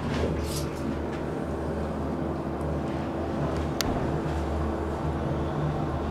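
Modernized Northern traction elevator car travelling between floors, heard from inside the car: a steady low hum with a steady higher drone. A single sharp click about four seconds in.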